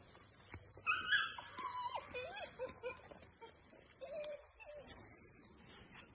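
Faint dog whining: a few short, high whimpers that rise and fall, bunched in the first half with one more a little later.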